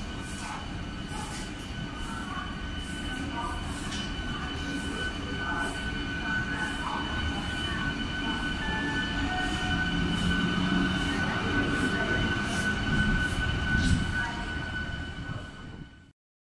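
MEMU train coaches rolling past, the wheels clicking over rail joints at a regular beat under a steady high whine. The sound grows slowly louder and fades out at the end.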